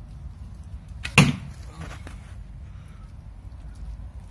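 A bow shot: one sharp snap of the bowstring releasing an arrow, a little over a second in.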